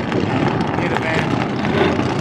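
Supercharged burnout car held at high revs, its rear tyres spinning and smoking. The engine and tyre noise run loud and unbroken.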